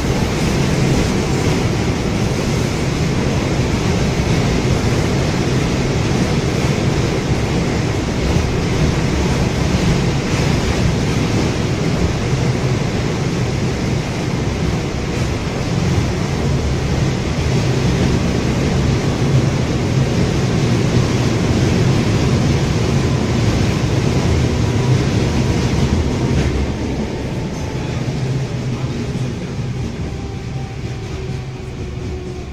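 Rusich articulated metro train heard from inside the car while running between stations: a steady rumble of wheels and running gear on the rails. Near the end the noise eases off and a falling electric whine sets in as the train slows.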